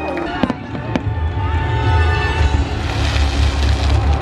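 Fireworks going off over show music: sharp bangs about half a second and a second in, then low booms and a crackling hiss that build about three seconds in.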